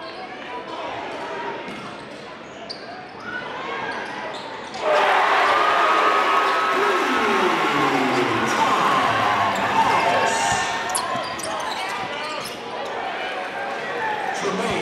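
Basketball dribbled on a hardwood gym court, with the voices of players and spectators echoing in the hall. About five seconds in, the crowd noise suddenly gets much louder.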